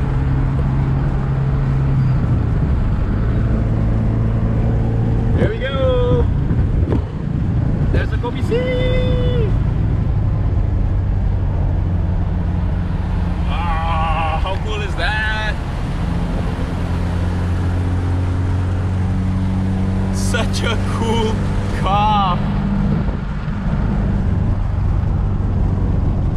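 Cabin sound of a 1979 Alfa Romeo Alfetta 2.0, its twin-cam four-cylinder engine running steadily at highway cruising speed with road noise. The engine note steps in pitch a few times as speed changes.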